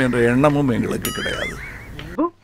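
A man's voice breaks off, then about a second in comes a high, wavering animal-like call whose pitch shakes up and down for about a second, an inserted comic sound effect.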